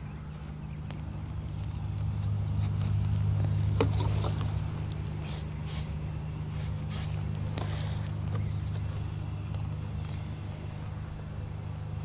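A low, steady motor hum that swells a little a few seconds in. Over it are a few faint clicks and scrapes as a grafting knife is wiped clean to disinfect it.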